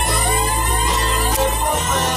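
Reggae backing track with a steady deep bass line, overlaid by a long siren-like tone that holds high and slowly arcs down before ending near the end, like a reggae sound-system siren effect.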